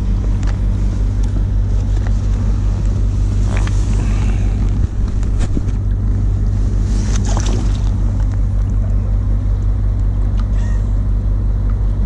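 Steady low drone of a moored car ferry's engines running, with a few brief water splashes as a pollock is lowered back into the water.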